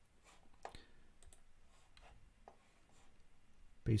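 Faint, scattered clicks of a computer mouse and keyboard, half a dozen light clicks spread over a quiet room.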